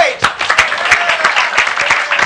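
Studio audience and host applauding: a dense run of hand claps greeting a correct answer.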